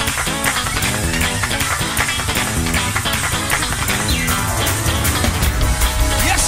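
Live gospel praise-break music: a church band playing a fast, driving beat with busy drums.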